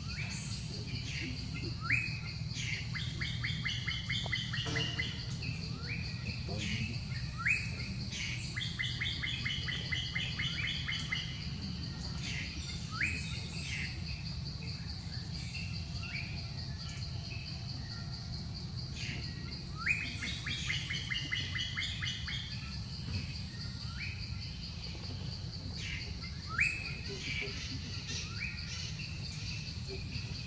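A songbird repeating the same phrase about five times, roughly every six seconds: a quick rising note followed by a fast trill. Under it runs a steady high insect drone.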